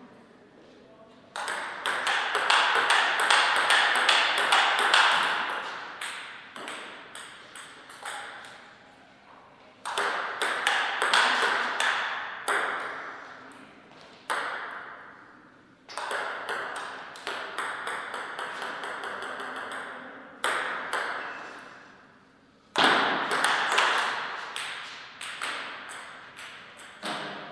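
Table tennis ball clicking back and forth between the bats and the table in four rallies, each a few seconds long, separated by short pauses.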